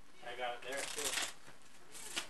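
A voice speaking briefly, with a rustling, brushing noise over it between about half a second and a second and a half in, as cloth rubs close to the microphone.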